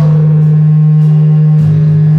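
Live gospel solo: a woman singing through a microphone over a loud low note held steady in pitch.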